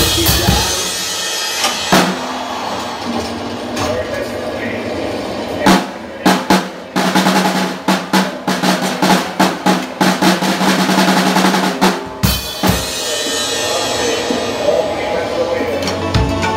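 A Sonor acoustic drum kit played with sticks: snare, bass drum and cymbals in a steady groove, with a run of rapid strikes from about six to twelve seconds in.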